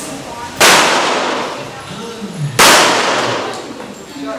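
Two pistol shots about two seconds apart, each a sharp crack followed by a long echoing decay.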